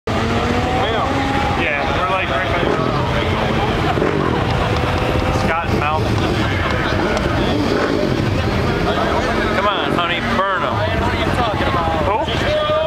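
Fourth-generation Chevrolet Camaro's engine revving hard through a burnout, its pitch rising and falling repeatedly.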